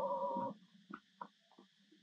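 A young macaque's drawn-out pitched call, ending about half a second in, followed by a few faint scattered clicks.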